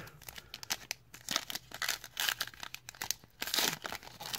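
Foil trading card pack wrapper being torn open and crinkled by hand, in short irregular rips and crinkles, the loudest near the end.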